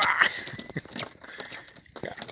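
Close rustling and crackling with scattered clicks, loudest in a short burst at the very start and fading after: handling noise near the phone's microphone as the landing net holding the pufferfish is lifted.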